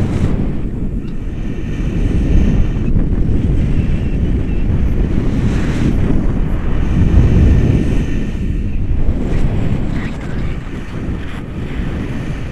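Airflow of a paraglider in flight buffeting the action camera's microphone: loud, low wind rumble that swells in the middle and eases somewhat near the end.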